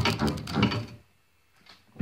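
Hand-cranked brushless washing-machine motor, run as a generator, grinding with a fast run of clicks while its shorted output wires touch and spark; the short loads the generator so it grinds and drags. The sound cuts off about a second in, leaving near silence.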